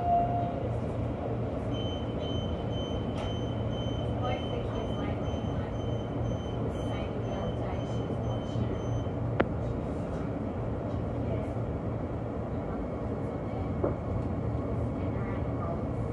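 Electric suburban train moving off from a station, heard from inside the carriage: a steady low hum and running noise. A thin high steady tone sounds from about two seconds in until about nine seconds, and there is a single sharp click shortly after.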